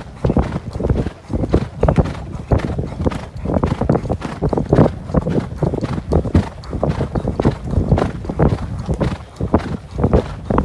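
Hoofbeats of a ridden horse on a heavy sand track, heard from the saddle: a steady, even run of footfalls.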